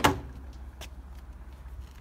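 Door latch of a 1950 Ford Custom releasing as the chrome exterior handle is worked: one sharp metallic click at the start, then the door swinging open quietly, with a faint tick a little under a second in.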